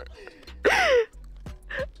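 A loud, drawn-out vocal exclamation with a falling pitch, about half a second long and about half a second in: a shocked reaction to a crude answer. A short vocal sound follows near the end.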